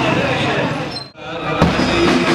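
Men's voices from a crowd, broken off by a sudden drop about a second in; then large bass drums carried in a mourning procession begin beating, with the first strikes near the end.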